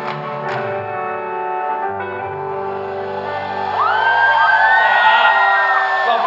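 A live rock band's electric guitar, bass and drums holding a final chord, with a few drum hits near the start. About four seconds in, loud high gliding whoops rise over the ringing chord.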